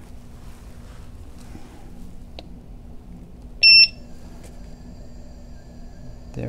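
Begode EX30 electric unicycle giving one short high beep about three and a half seconds in as it powers up on freshly updated firmware. A faint steady high whine from the wheel follows, over a low hum.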